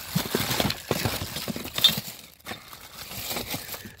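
Clear plastic zip-lock bags crinkling and rustling as they are handled and pushed aside, with a few small clicks and knocks of items shifting, the loudest about two seconds in.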